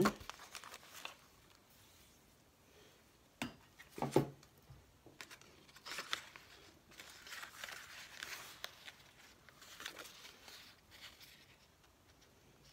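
Paper scraps and card being handled and shuffled: on and off rustling and crinkling, with two short knocks around three and a half and four seconds in.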